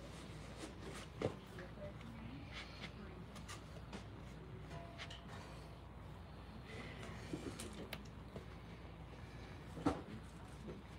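Faint room tone with scattered quiet clicks and rustling as a pair of canvas slip-on shoes is handled and pulled onto the feet, and a sharper click near the end.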